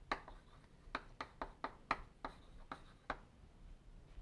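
Chalk tapping and scraping against a blackboard as it writes: a quick, irregular run of sharp clicks that stops about three seconds in.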